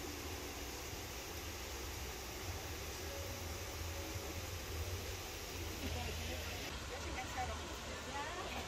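Outdoor ambience: a steady low rumble and hiss with faint distant voices, which become more frequent near the end.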